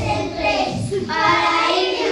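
A group of young children singing together.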